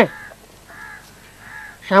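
Two faint, short bird calls in the background, about a second apart, between words spoken at the start and end.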